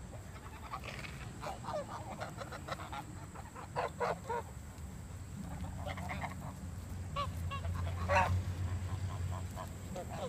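A flock of domestic geese honking, with short calls coming on and off throughout and the loudest about eight seconds in.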